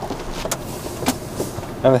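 Diesel engine of a tipper lorry running steadily while stationary, heard from inside the cab, with a few sharp clicks from the cab.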